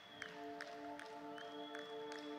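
Quiet background music: held chords that change about a third of a second in, with faint light ticks.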